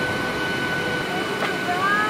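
Steady rushing noise inside a jet airliner's cabin, with a thin steady whine from the engines. A voice starts near the end.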